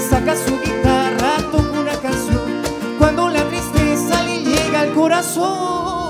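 Live acoustic band music: violin and strummed acoustic guitars over cajón beats, the beats dropping out about five seconds in.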